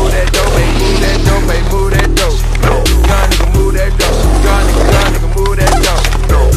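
A skateboard rolling and clacking on pavement, with sharp snaps and impacts, over a music track with a heavy bass beat.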